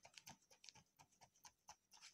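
Faint, irregular taps and knocks from a closed picture book being shaken in both hands, its covers and pages knocking lightly several times a second.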